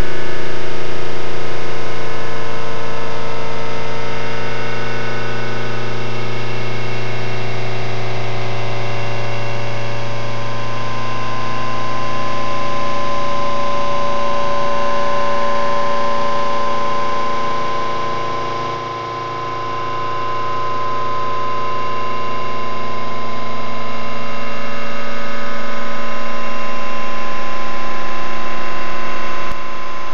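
A droning soundtrack of many steady, sustained tones held together, with a strong low hum in the first part that fades out around twelve seconds in. The whole drone slowly dips in loudness about two-thirds of the way through and then swells back up.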